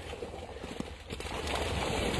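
Water splashing and sloshing around a person wading with a large fish, with irregular small knocks, growing louder about a second in.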